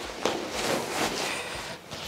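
Rustling and handling of a Dyneema fabric backpack as a stuffed clothes sack is pushed into its inside pocket.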